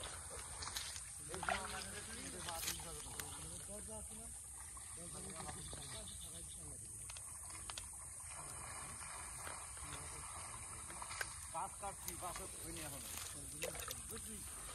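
Indistinct, low voices talking on and off, not loud enough for words to be made out, over a steady high-pitched hiss.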